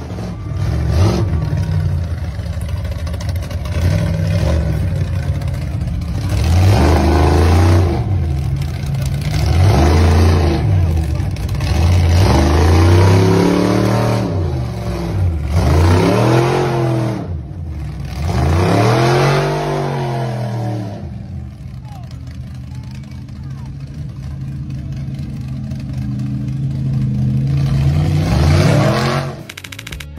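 Giant-tyred lifted mud truck's engine revving hard in a series of long rising-and-falling swells as it climbs onto and crushes a car in the mud, then running lower and steadier before rising again near the end. Crowd voices in the background.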